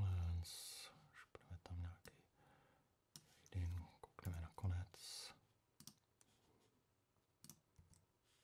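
A man muttering and humming quietly under his breath in a few short unintelligible bursts, with occasional computer mouse clicks.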